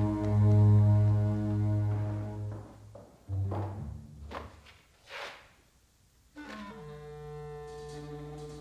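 Suspenseful orchestral film score: low brass and strings hold a heavy chord that fades away about two and a half seconds in. After a few soft hits and a near-silent pause, a new held brass chord comes in near the end.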